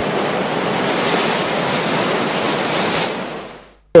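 Ocean surf sound effect: a steady wash of wave noise that fades out near the end.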